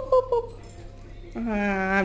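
Voices only: a toddler's high-pitched speech trails off, and near the end a lower voice holds one drawn-out, steady hum-like sound that leads into a word.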